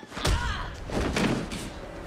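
Two heavy thuds about three-quarters of a second apart, the blows of a fight scene in a TV episode's soundtrack, with a short voice sound between them.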